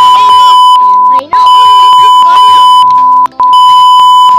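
A loud, steady, single-pitched censor bleep dubbed over children's talk. It comes in three long stretches broken by short gaps about a second in and about three seconds in, with the children's voices faintly audible underneath.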